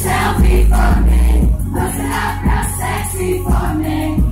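Live pop song played loud through a venue sound system, with heavy bass and a steady beat.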